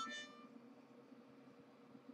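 A harmonica note dies away in the first half-second, then near silence between phrases, with only a faint steady low hum.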